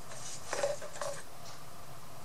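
Light handling clatter of a small plastic paint bottle and brush on the craft table: a short run of small knocks about half a second in, and another just after a second.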